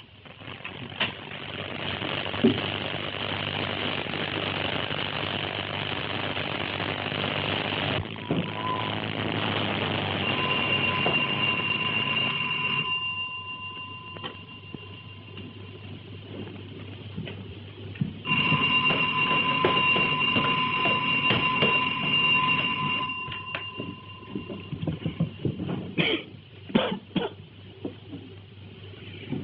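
Vehicle running, a dense rushing noise on an old band-limited film soundtrack, with two long steady high tones sounding over it, one about ten seconds in and a longer one past the middle, and a few knocks near the end.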